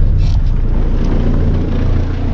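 Mercedes truck's diesel engine running with a steady low rumble. A brief hiss sounds about a quarter second in.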